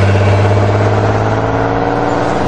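Car engine running steadily with a deep, even hum, from a film soundtrack.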